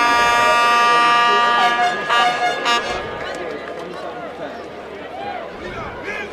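A horn sounds one long, steady blast that breaks up and stops about three seconds in. After that, softer crowd noise and distant voices.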